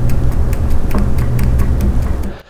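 Original intermediate steering shaft from a 2020 GMC Sierra HD being twisted back and forth by hand at its telescoping spline joint, giving a quick run of clicks, about five a second, over a low rumble. The loose splines are the source of the steering clunk the truck has had since new.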